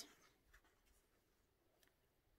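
Near silence, with a faint rustle and a couple of soft ticks from paracord being wrapped around a hand.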